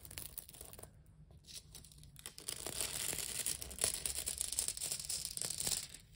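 Thin gold embossing foil crinkling and crackling under the fingers as it is pressed onto dried glue and peeled up, leaving gold on the glue lines. The crackling is faint at first and grows louder about halfway through.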